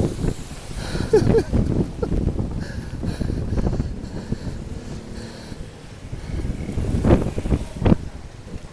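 Strong cyclone wind buffeting the microphone, a low rumbling noise that swells and drops with the gusts.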